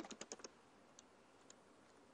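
Faint computer keyboard typing: a quick run of keystrokes, then a couple of single key presses.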